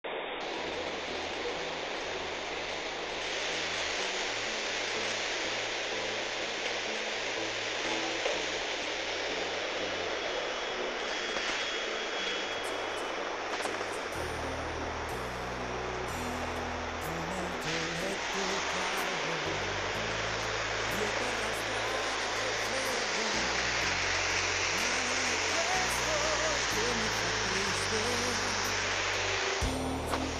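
A steady rush of heavy rain and floodwater running in the street, with the bass notes of background music underneath, which grow stronger about halfway through.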